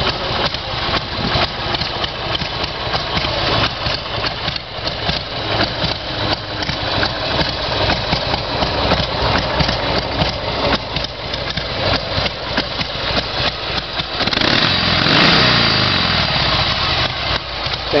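1988 Harley-Davidson Sportster 883's air-cooled Evolution V-twin, carbureted by an S&S carburettor, idling with an uneven pulsing beat. About fifteen seconds in it is revved up and let back down.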